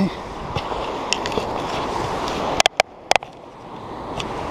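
Sea surf washing on the rocks with wind on the microphone, a steady rushing noise. A few sharp clicks come about two and a half to three seconds in, and the rushing briefly drops away after them.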